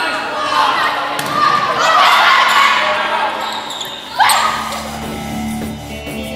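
Indoor volleyball play: players shouting and calling as the ball is hit and strikes the hardwood floor, echoing in the gym. A sudden loud shout comes about four seconds in, and background music starts near the end.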